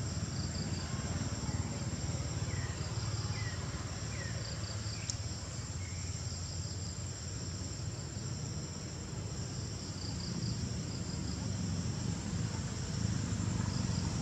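Insects chirping steadily in the background, a continuous high buzz with short trills repeating every second or two, over a steady low rumble.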